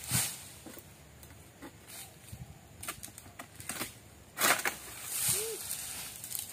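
Scattered light knocks and rustles from a long-poled oil palm pruning sickle (egrek) being worked up among the palm fronds, with one louder rustling burst about four and a half seconds in.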